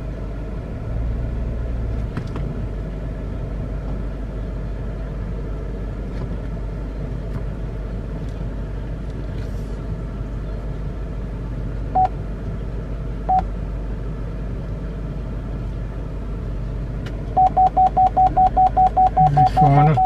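Cabin rumble of a 2008 Buick Lucerne's 4.6 L Northstar V8 as the car moves slowly in reverse, with a beeping chime. The chime gives two single beeps, then near the end beeps rapidly, about five a second: the rear parking-assist warning of an obstacle close behind.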